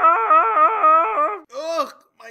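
A cartoon voice singing a rapid solfège scale, warbling up and down in quick note steps, stopping about one and a half seconds in. It is followed by a short vocal sound whose pitch rises and falls near the end.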